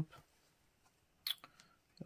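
Near-quiet room with one short plastic rustle a little past the middle: a baseball card being slid into a soft penny sleeve.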